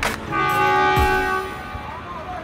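Train horn sounding once, a steady chord of several notes held for about a second, just after a sharp click.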